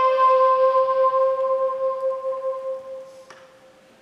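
A woodwind instrument holds one long note that slowly fades away, ending with a faint click just after three seconds in.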